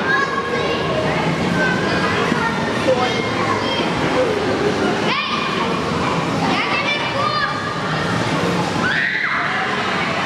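Many children playing and chattering, a steady din of overlapping young voices, with a child's high-pitched call near the end.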